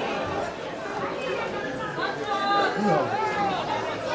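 Several people's voices talking and calling out over one another, with no clear words.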